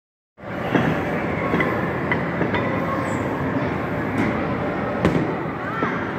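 Steady loud din of an indoor batting-cage facility, starting about half a second in, with scattered sharp knocks, the loudest about five seconds in.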